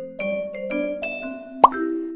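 Chill instrumental background music of short, bell-like mallet notes in a steady pattern. About a second and a half in, a single short pop sound effect that sweeps sharply upward in pitch stands out as the loudest sound.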